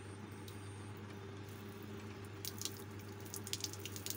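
Water from a tap splashing and dripping, the splashes starting about two and a half seconds in and growing busier. A steady low hum runs underneath.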